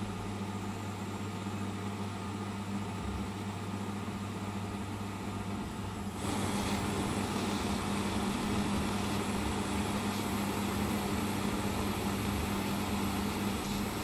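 Small handheld butane torch burning with a steady hiss as it heats scrap silver in a crucible, over the steady hum of a small fume extractor fan. The hiss gets louder about six seconds in. The small torch is slow to bring the silver up to melting temperature.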